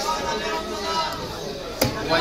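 A cleaver chopping through a large fish into a wooden log chopping block, one sharp chop near the end, with people talking in the background.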